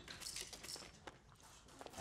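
A few faint clicks and knocks scattered through a quiet stretch.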